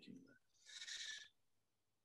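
Near silence, broken by a faint, short breath of about half a second near the middle, the speaker drawing breath between sentences.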